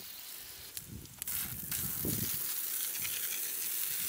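Garden hose spray nozzle spraying a jet of water onto a car wheel and tire: a steady hiss of spray spattering on the rim, which grows louder about a second in.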